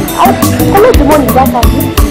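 Background music with a fast, steady percussive beat, with a woman's voice over it.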